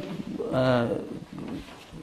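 A man's voice making one drawn-out hum or 'mm' sound about half a second in, its pitch rising and then falling.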